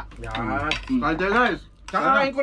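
Spoons and forks clinking against plates and a serving pan during a meal, under men's voices.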